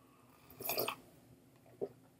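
A man taking a sip from a mug: one short, quiet slurp about half a second in, then a faint click near the end.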